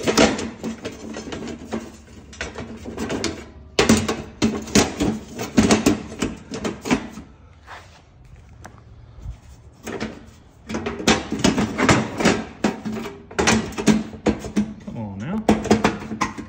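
A man's voice talking in stretches, with a short quieter pause about halfway through.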